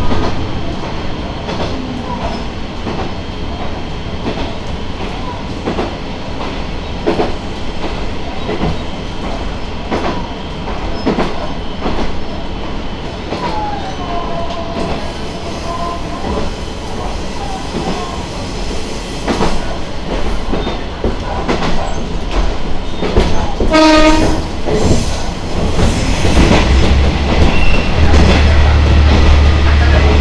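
Diesel railcar running over jointed track, heard from the driver's cab, with a steady run of wheel clicks at the rail joints. About halfway through there is a brief wheel squeal, and near three-quarters a short horn blast. The last few seconds get louder as the train runs into a tunnel.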